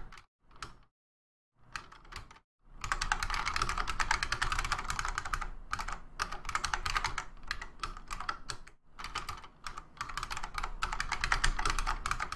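Typing on a computer keyboard: a few short runs of keystrokes with gaps in the first couple of seconds, then fast, near-continuous typing with only brief pauses.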